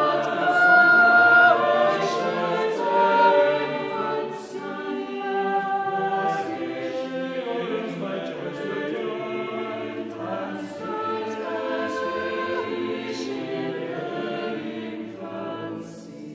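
Mixed a cappella chamber choir singing a five-part (SATTB) English Renaissance madrigal: several sustained, overlapping voice lines with crisp 's' consonants, in a reverberant church acoustic. The singing grows softer toward the end.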